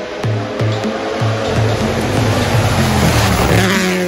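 Electronic background music with a steady beat, over a car passing on a wet road: the hiss of tyres on the wet surface swells over about two seconds to its loudest about three and a half seconds in, then drops away.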